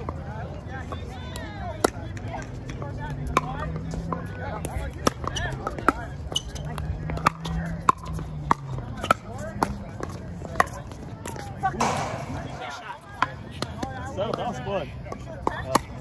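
Pickleball paddles striking a plastic ball in a rally: a run of sharp pops at irregular intervals, some from neighbouring courts, over a murmur of players' voices.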